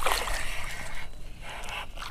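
Water splashing as a hooked bass thrashes and shakes its head at the surface beside the kayak, trying to throw the lure; the splashing is strongest in the first second and then eases off.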